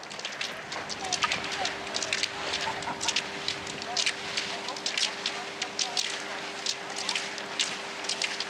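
A pack of cross-country skiers skating past on groomed snow: skis scraping and poles planting in many quick, irregular clicks and crunches. A faint steady hum runs underneath.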